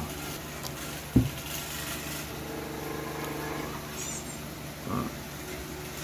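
A single sharp knock about a second in, from handling the battery charger and its cables on a wooden table, over a low steady hum.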